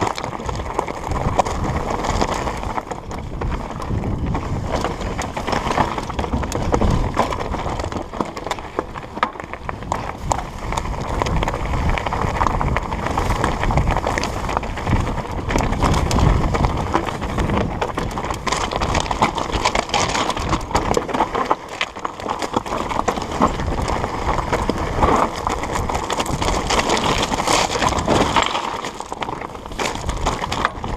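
Trek Slash 8 mountain bike rolling down a rocky trail: tyres crunching over loose stones, with a constant clatter of knocks and rattles from the bike as it bounces over rock.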